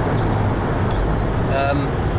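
Inside a moving car: steady engine and tyre rumble. A brief voice sound comes about one and a half seconds in.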